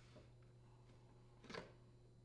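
Near silence with a faint low hum, broken about one and a half seconds in by one brief soft knock as the old plastic detergent dispenser is handled and lifted out of the dishwasher's inner door panel.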